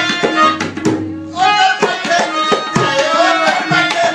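Tabla played fast and busily, with a harmonium holding sustained notes underneath; the playing breaks off briefly about a second in, then carries on.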